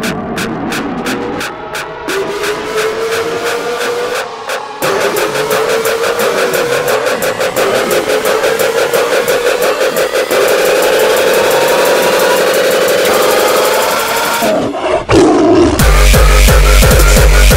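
Hardcore electronic dance track in a build-up. A drum roll speeds up steadily from a few hits a second to a rapid stream under a slowly rising synth tone. It breaks off briefly near the end before heavy kick drums come in.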